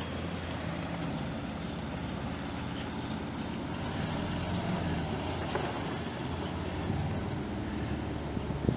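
Chevrolet C65 truck's 427 cubic-inch V8 gas engine running steadily.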